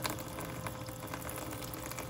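Battery-powered toy sink pump running with a thin steady hum while a small stream of water pours from the sprayer head and splashes into the shallow plastic basin.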